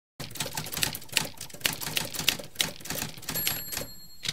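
Typewriter sound effect: a rapid, uneven run of key clacks, with a faint high ring near the end.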